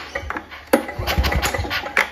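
Victa Powertorque two-stroke lawn mower engine turned over by its pull-start rope with the spark plug out and a compression gauge fitted, giving a few short, uneven strokes, the sharpest about three-quarters of a second in. With the decompressor valve still in, compression builds only to just below 50.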